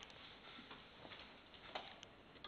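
Near silence: room tone with a steady faint hiss and a few faint scattered clicks.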